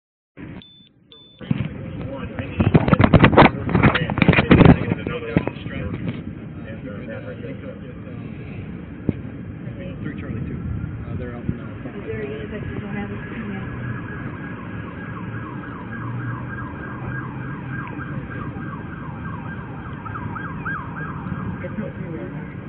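A siren yelping in rapid, repeating rises and falls over steady vehicle and street noise, from about twelve seconds in. Before that come several loud knocks and rubbing against the body-worn camera in the first few seconds.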